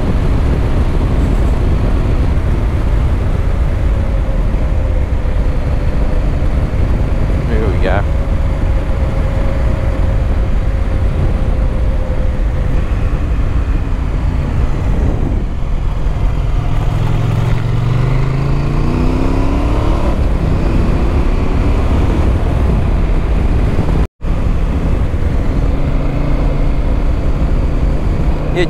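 Adventure motorcycle riding along an open road: steady engine and road noise with heavy wind rush. A little past halfway the engine note rises as the bike accelerates. Near the end the sound cuts out for a moment.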